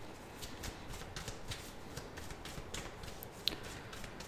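A tarot deck being shuffled by hand: a soft, quick run of card clicks, with one sharper snap about three and a half seconds in.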